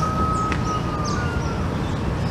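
A thin, high steady tone held for about a second, sinking slightly, with a shorter one near the end, over a steady low background rumble.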